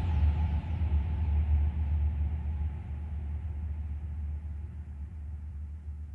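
The closing tail of an electronic glitch hop track: a low bass rumble with a faint wash above it, fading out slowly.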